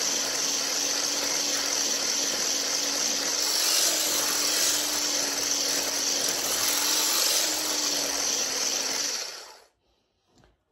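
Electric hand blender with a whisk attachment running steadily as it whips cream in a steel pot, a constant motor hum with a hissing whir over it. It is switched off about nine seconds in.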